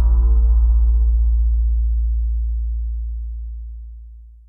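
Tail of an electronic intro sting: a deep, wavering bass drone whose higher overtones die away about two seconds in, the low tone itself fading out toward the end.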